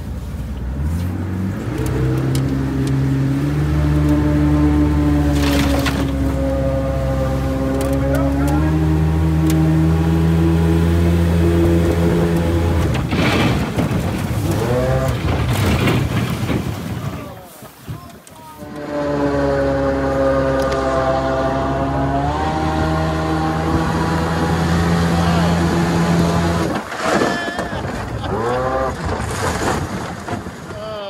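125 hp outboard jet on an 18-foot riveted aluminium flat-bottom boat running upriver under power: it rises in pitch in the first couple of seconds and then holds steady. It backs off sharply about 17 seconds in, picks up again, and eases off near the end as the boat comes alongside a gravel bar.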